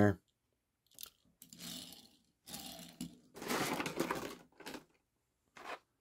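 Hands handling a small diecast model car and crinkling plastic blister packaging: a few light clicks and three short bursts of crinkling, the longest about three and a half seconds in.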